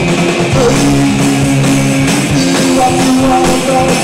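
A rockabilly band playing live: a plucked upright double bass and a drum kit drive a steady beat, with held sung notes over the top.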